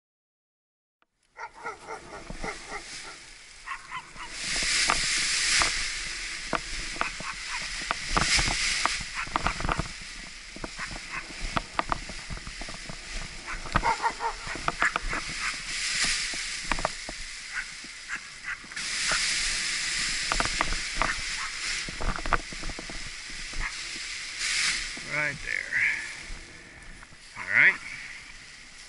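Wind buffeting the action camera's microphone in repeated loud surges, mixed with rustling and sharp snaps of an Edel Power Atlas paraglider wing's nylon fabric and lines as it is kited overhead. The sound starts after a second and a half of silence.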